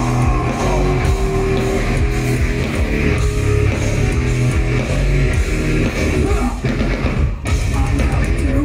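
Industrial metal band playing live at full volume: heavily distorted guitars and bass over a drum kit, heard from the crowd through the venue's PA.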